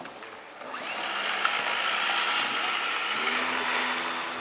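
Small electric motor and propeller of an F3P indoor aerobatic foam model plane spinning up about half a second in, then running with a steady high-pitched whine under throttle. A lower tone joins near the end.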